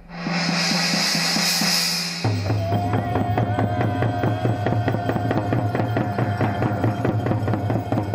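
Several hand-held goatskin frame drums beaten together in a fast, steady rhythm, with a long held tone above the drumming. For about the first two seconds, before the drumming sets in, there is a bright shimmering wash like a struck gong.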